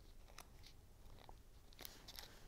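Near silence, with a few faint ticks of paper being handled as the glued pieces of a paper bow are pinched together by hand.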